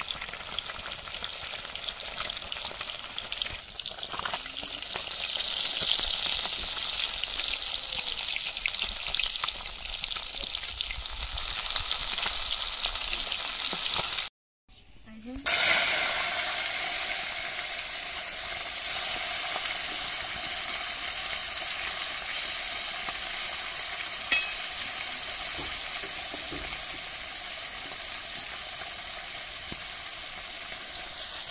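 Fish pieces sizzling as they fry in hot oil in an aluminium kadai, growing louder a few seconds in. The sound drops out abruptly about halfway, then the steady frying returns, with a single sharp click later on.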